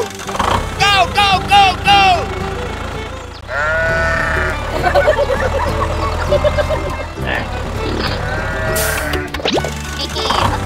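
Background music with added cartoon sound effects: four short, high, arched calls in the first two seconds, then a long wavering sheep bleat from about three and a half seconds in, and another bleat shortly before the end.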